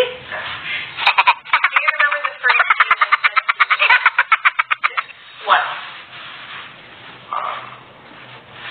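A person's voice making a fast run of short repeated pulses, about ten a second, lasting about four seconds before it drops off.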